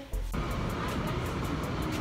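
A steady low rumble of background noise that starts abruptly a moment in and holds evenly.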